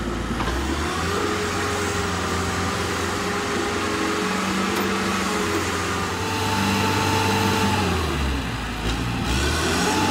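Watson truck-mounted auger drill rig running under load while drilling a 12-inch concrete pier hole. The engine note dips and climbs several times as the load on the auger changes.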